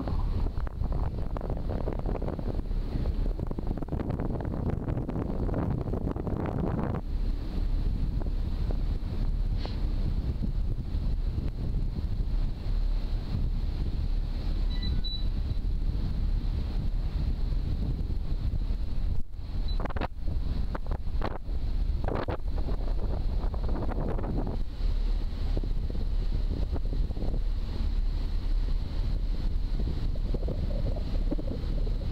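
Wind buffeting the microphone on a moving ferry, over the steady low rumble of the ferry's engine. About two-thirds of the way through there is a brief dip and a few sharp knocks.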